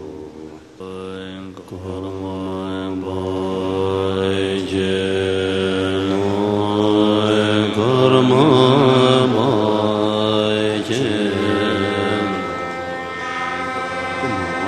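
Tibetan Buddhist prayer chanted in long, drawn-out tones by low voices, with the pitch wavering and the sound growing louder toward the middle.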